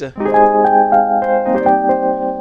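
Sampled Wurlitzer 200A electric piano (Neo-Soul Keys 3X Wurli) playing a short run of chords, the notes changing several times, with added key-click noise on each key press that the player still finds too much.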